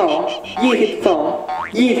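A girl speaking, with a comic rising boing sound effect twice over background music.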